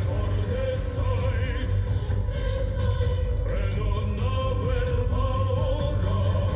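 Live concert performance: a male singer holds long, high sung notes with vibrato over a band with a heavy, steady bass.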